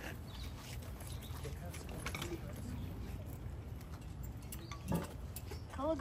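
Quiet open-air background with a steady low rumble, faint scattered clicks and brief distant murmurs. A loud spoken command starts right at the end.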